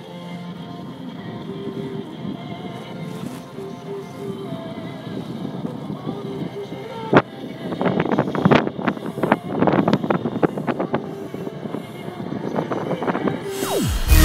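Speedboat running on open water, with wind buffeting the microphone and water slapping against the hull; about halfway through the gusts and splashes grow louder and come thick and fast.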